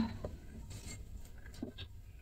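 Quiet kitchen with a few faint soft taps and rustles as cooking oil is poured from a bottle into a bowl of flour.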